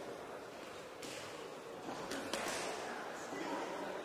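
Hall ambience with a steady crowd murmur, and two sharp smacks of boxing gloves a little after two seconds in.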